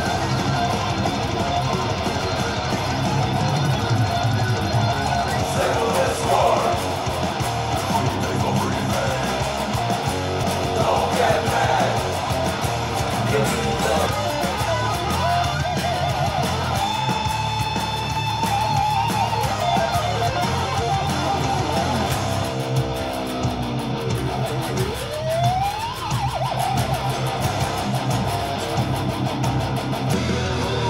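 Two electric guitars played together in a heavy-metal run-through, riffing steadily, with a long held lead note about halfway through and a rising string bend a few seconds before the end.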